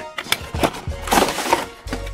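Cardboard toy box being opened by hand: a few sharp clicks as the flap comes free, then a burst of scraping, rustling cardboard about a second in, over background music.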